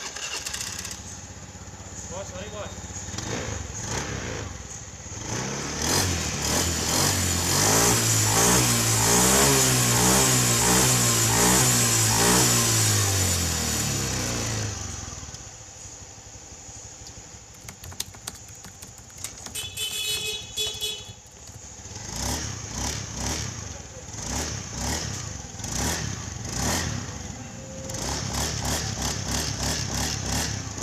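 Honda Beat FI 110 scooter's single-cylinder engine running, revved hard for several seconds, then dropping back and blipped repeatedly. This is a test run after a repair meant to cure a rough, clattering CVT on pull-away.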